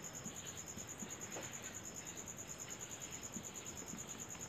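Faint, steady cricket trill: a high tone pulsing rapidly and evenly, with a fainter, slower-pulsing chirp just below it.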